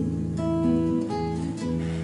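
Classical (nylon-string) acoustic guitar playing alone: a chord rings on while single notes are plucked one after another, about every half second.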